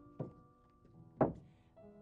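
Two dull thumps about a second apart, the second louder, over quiet background music with long held notes.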